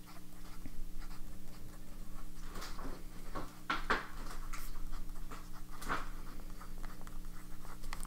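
Fountain pen nib scratching across notebook paper while writing a short line of words, in short irregular strokes.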